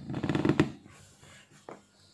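Test leads handled against a multimeter, a short rustling scrape, then a single click near the end as a banana plug is pushed into the meter's input jack.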